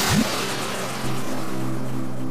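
A whoosh transition effect that fades away in the first half second, with a brief sweeping low tone. About a second in, a steady ambient music drone of held tones begins.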